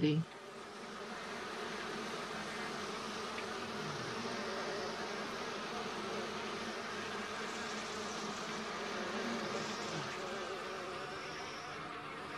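Honeybees buzzing in a steady, dense hum that builds up over the first second or two and then holds.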